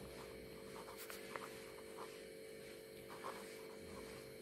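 A steady electrical hum with faint, scattered scratches of a felt-tip marker writing on paper.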